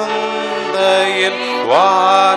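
A woman and two men singing a Tamil Christmas carol together through microphones, in long held notes; the voices slide up to a new, louder note near the end.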